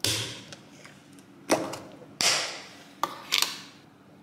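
Crinkling and rustling of a yogurt pack's plastic wrapping as it is handled and opened: four sharp crackling bursts, each dying away quickly.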